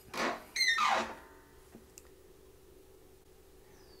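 Dishwasher door swung down open: a click as it unlatches, a short rush, then a falling, twangy tone from the door's hinge mechanism that rings out within about a second and a half.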